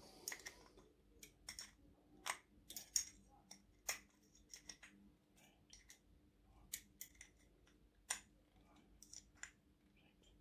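Faint, irregular clicks and taps of small metal parts as fingers fit clamps into a 1/14-scale aluminium spider wheel for an RC truck trailer.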